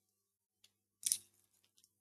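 A quiet pause with one short, soft noise about a second in, followed by a few faint ticks.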